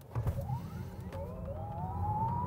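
Electric drive motors of a dual-motor Lucid Air Dream Edition whining under full launch-control acceleration from a standstill. The whine climbs steadily in pitch as the car gathers speed, over a low road rumble inside the cabin.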